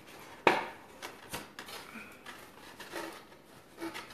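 Stiff cardstock paper petals being handled and pressed together, with soft rustling and small clicks, and one sharp knock about half a second in.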